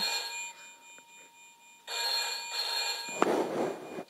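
An electronic Deal or No Deal game's speaker playing a telephone-ring effect that signals the banker's offer. One ring fades out at the start and a second ring sounds about two seconds in, lasting about a second. A short burst of rough noise follows near the end.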